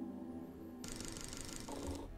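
A held chord of intro music dies away. About a second in, a quiet, rapid, even clatter of a film projector running starts, as a sound effect.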